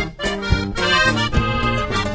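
Norteño corrido music from an accordion-led band: the accordion plays the melody over a steady bass, with a brief break in the playing just after the start.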